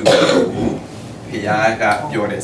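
A man's voice: a short, rough, noisy vocal burst at the start, then a brief spoken phrase about a second and a half in.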